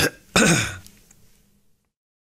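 A man clearing his throat: a short burst, then a louder rough one with falling pitch about a third of a second in.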